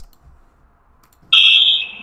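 A loud, steady, high-pitched electronic beep tone starts suddenly a little past halfway and holds, heard through Ring doorbell camera audio.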